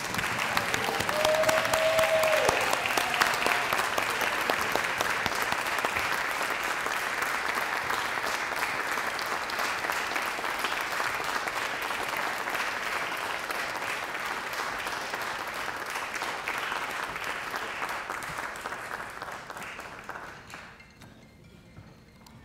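Audience applauding, a steady clatter of many hands clapping that fades away near the end, with one short cheering call near the start.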